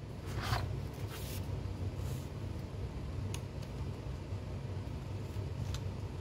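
Plastic CED videodisc caddy being handled and opened: a few brief scraping swishes in the first couple of seconds, then a couple of light clicks, over a steady low hum.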